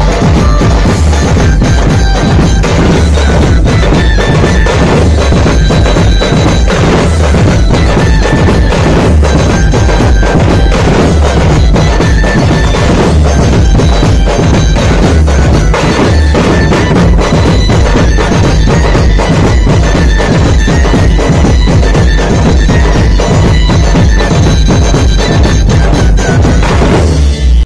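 Dhumal band playing loud: large drums beaten with sticks in a dense, driving beat, with a reedy wind-instrument melody over it.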